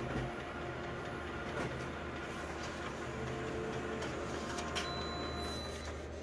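Office multifunction colour copier running a print job: a steady mechanical hum with a few faint clicks.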